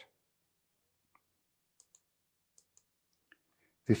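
Near silence broken by a few faint, scattered small clicks.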